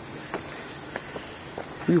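A steady, high-pitched insect chorus, with a few faint ticks.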